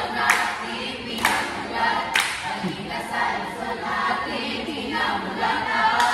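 A group of voices singing together without instruments, with three sharp claps about a second apart in the first half.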